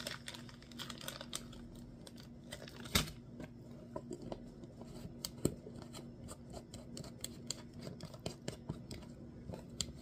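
Crinkling and crackling of a foil potato chip bag being handled, with many small irregular clicks. Two sharper knocks stand out, about three seconds in and again about five and a half seconds in.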